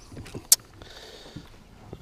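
Quiet handling noises in a small aluminium jon boat: a few faint knocks, then one sharp click about halfway through.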